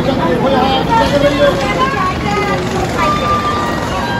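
People talking close by over the steady background din of a busy railway platform, with a short steady tone about three seconds in.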